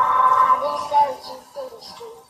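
A song with a singing voice over backing music: the voice holds a note at first, then moves through shorter sung phrases.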